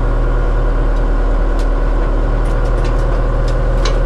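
Tracked excavator's diesel engine running steadily under load, heard from inside the cab as the machine crawls slowly up onto a trailer, with a deep hum and a few faint clicks.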